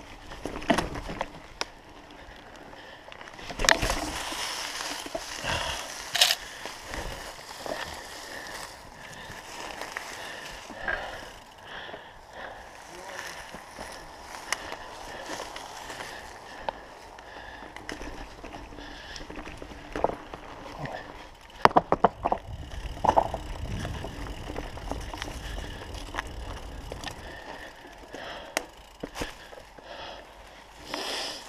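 Commencal mountain bike being ridden over a dirt and leaf-covered forest trail: tyre rolling noise with chain and frame rattle, broken by sharp knocks and clatters as it hits bumps, loudest about four and six seconds in and in a burst around twenty-two seconds.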